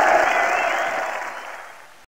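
Channel outro sound over the closing logo: a noisy rush with a held tone under it, fading away steadily to silence.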